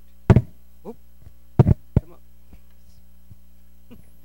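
Steady electrical mains hum from the church sound system, broken by sharp knocks of microphone handling noise: one near the start and a close group of three around one and a half to two seconds in.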